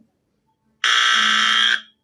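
A game-show buzzer sounds once, a flat electronic tone lasting about a second, beginning nearly a second in. It marks the end of the team's turn, with the question passing to the opposing team to steal.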